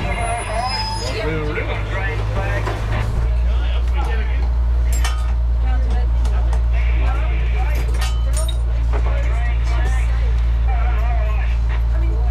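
Vintage rail motor car running, heard from inside its driving cab: a steady low rumble that grows louder about three seconds in, with a few sharp clicks and people talking in the background.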